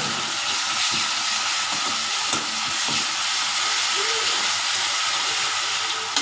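Sliced onions sizzling steadily in hot oil in a metal kadai, with a spatula stirring them and scraping the pan a few times.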